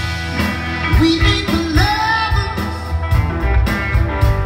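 A live soul band playing on a concert sound system: electric guitars, keyboard, bass and drums, with a male voice singing over them.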